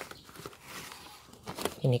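Faint rustling and crinkling of a thin black plastic polybag, with soft crumbling of wet soil, as hands press a seedling's root ball into it.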